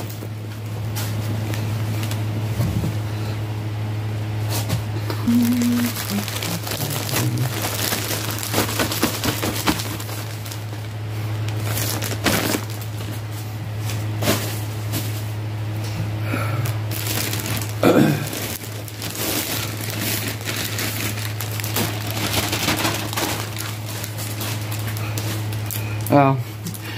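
Rustling and crinkling of plastic packaging being rummaged through and handled, with scattered clicks over a steady low hum. A throat clear comes about eighteen seconds in.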